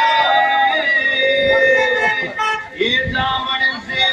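A Rajasthani fagun (Holi) folk song: a voice singing long, held, wavering notes over musical backing, with the loudness dipping briefly a little past two seconds in and again near the end.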